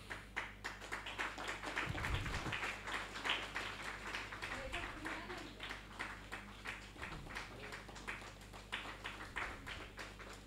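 Audience applauding: a steady patter of many hand claps.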